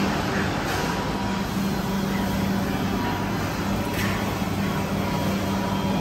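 Steady background noise of a hawker centre food court: a continuous mechanical hum with a low, even tone.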